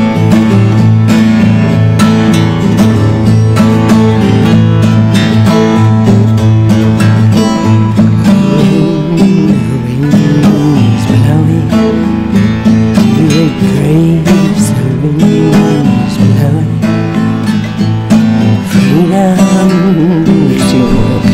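12-string acoustic guitar playing a continuous accompaniment. From about eight seconds in, a voice sings a wavering wordless melody over it.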